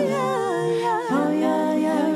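Wordless a cappella singing: voices humming sustained chords in harmony, with a higher line that wavers and moves about half a second to a second in.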